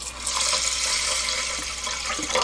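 Water poured in a steady stream from a stainless steel bowl into a rice cooker's inner pot onto rice, easing off slightly toward the end. It is the soaking water from dried sweet potato stems and leaves, poured in as the rice-cooking water.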